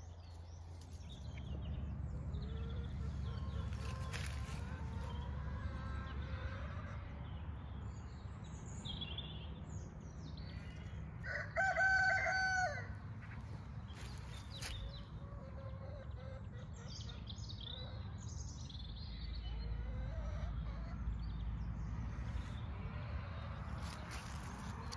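A rooster crows once near the middle, one sustained call of about a second and a half. A low steady rumble runs underneath, with a few faint small-bird chirps.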